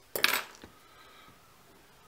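A single short, sharp metallic clink right at the start, then quiet room tone.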